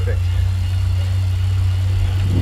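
Indoor bike trainer with a triathlon bike's rear wheel spinning on it as the rider pedals, a steady low hum.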